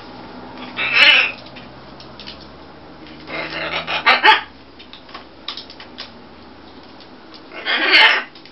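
Pet macaws squawking: three loud, harsh squawks, one about a second in, a longer doubled one around four seconds, and one at the very end, with small clicks between them.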